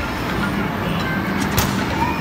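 Steady din of an amusement arcade, with one sharp bang a little past halfway as the mallet of a hammer-strength arcade game strikes its pad.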